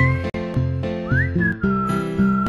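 Background music: a whistled tune gliding up and down over plucked chords with a steady beat. The music cuts out for an instant about a third of a second in.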